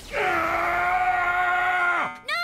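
A cartoon character's voice letting out one long, steady scream, sliding down slightly at first and then held at one pitch, as a robot is knocked back. A sharp hit sounds at the very start.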